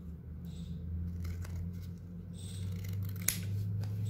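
Scissors snipping thin grey cardboard in short cuts, with one sharp click of the blades about three seconds in.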